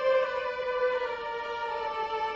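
Background music: a slow solo violin melody, its held notes sliding gradually lower in pitch.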